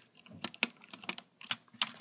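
A few scattered sharp clicks and taps of hard plastic LEGO pieces, as a minifigure is handled and pressed onto the studs of the set.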